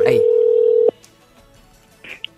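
Telephone ringback tone on an outgoing call heard over the phone line: one steady, loud ring that cuts off sharply about a second in, the call still waiting to be answered.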